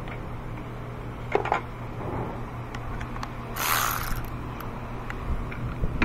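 A Milwaukee cordless power tool runs in a short burst of about half a second, a little past halfway, turning a battery bracket bolt with a 13 mm socket on a long extension. Light clicks and clanks of the socket and extension on metal come before it.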